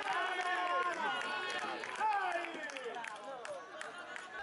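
Several young male voices shouting and calling across an outdoor football pitch, overlapping, with repeated high calls that fall in pitch.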